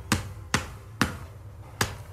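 A hand tapping sharply in a steady rhythm, roughly every half second. It is the repetitive motion of a woman in late-stage dementia who has little or no speech left.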